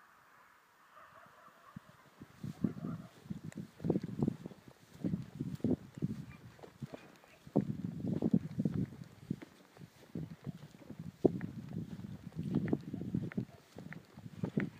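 Hunting hounds (zagar) giving tongue on a hare's trail, in short, irregular cries several a second, beginning about two seconds in.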